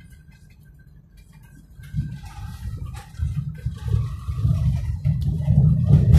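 Low, uneven rumble inside a moving car, quiet at first, then building from about two seconds in and growing loud toward the end, with a few faint knocks.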